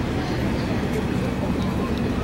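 Indistinct voices over a steady low rumble of outdoor background noise.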